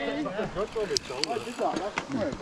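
Riders' voices talking, quieter than the nearby commentary, with a few sharp ticks from a coasting mountain bike's freehub as the bikes roll to a stop.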